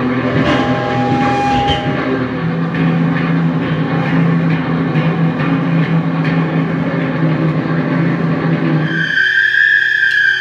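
A rock band playing loudly: distorted electric guitars holding long notes over a drum kit. About nine seconds in, the low notes drop out and a high, steady squealing tone takes over.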